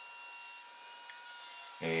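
A pause in the narration: faint, steady background hiss with a few thin high tones and no tool running. A man's voice starts again near the end.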